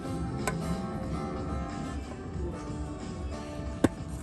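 Guitar being played, strummed chords and notes ringing on. There is a light click about half a second in and a sharp, louder click near the end.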